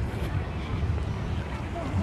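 Wind buffeting the microphone outdoors, a steady low rumble, with faint voices of people in the background.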